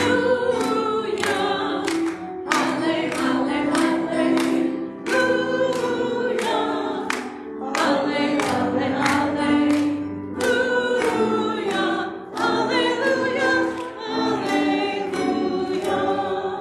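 A group of voices singing the gospel acclamation between the readings, with hands clapping in time about twice a second.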